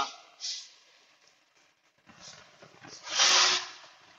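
Faint hisses, then a short, louder hiss lasting about half a second, about three seconds in.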